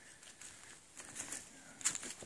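Faint footsteps crunching on dry leaves and dirt on a forest floor, a few short crackles about a second in and again near the end, over quiet woodland background.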